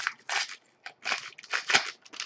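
Shiny trading-card pack wrapper crinkling and crackling in the hands, about five short rustles in two seconds.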